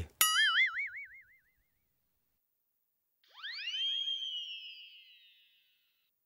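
Cartoon-style comedy sound effects. A wobbling boing fades out within about a second, and after a short silence a swooping tone rises quickly, then slowly falls away over about two seconds.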